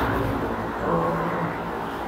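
Steady low rumble and room noise picked up by the microphone, with a faint low hum held for under a second in the middle.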